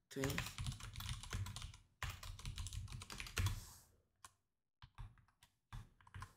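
Typing on a computer keyboard: quick runs of key clicks, thinning to a few scattered clicks in the last two seconds.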